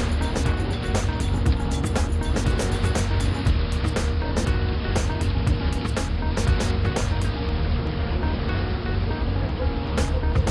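Low engine rumble and wind buffeting the microphone on the open deck of a harbour cruise boat under way, with crackling knocks throughout. Music plays along.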